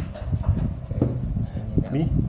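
A few irregular light knocks and taps as a tablet is handled and turned over by hand, over low rumbling handling noise.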